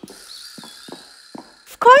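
Faint cartoon sound effects: a soft high hiss with a few light taps. A character's voice starts near the end.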